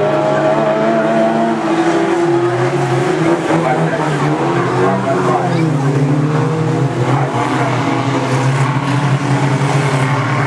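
Several small race cars' engines running hard together as the pack laps the oval, their pitches rising and falling with each car's revs.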